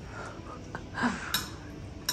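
A metal spoon clinks once against a ceramic soup bowl about a second and a half in, in a quiet room.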